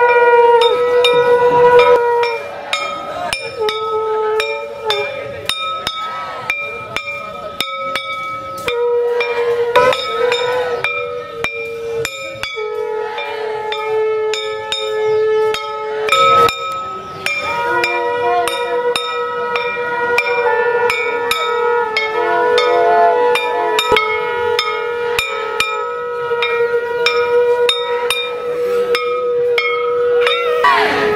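Conch shells and nagphani horns blown in long held notes at several steady pitches that shift every few seconds, over continual clinking of hand bells.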